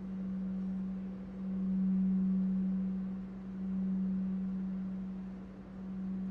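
Gold-coloured crystal singing bowl rubbed around its rim with a wand, giving one steady low hum that swells and fades about every two seconds.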